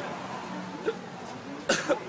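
A person coughing: one short, harsh cough near the end, the loudest sound, over faint street noise.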